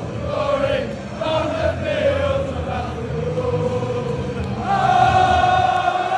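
Football crowd singing a chant in unison, many voices together, with a long held note starting near the end.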